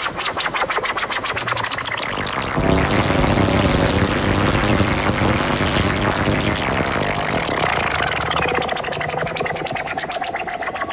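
Breakcore electronic music played live from Denon CD decks and a DJ mixer: a rapid clicking beat with a steady high whine. About three seconds in, it gives way to a dense, noisy, bass-heavy wash for about three seconds, then the whine and fast pattern come back.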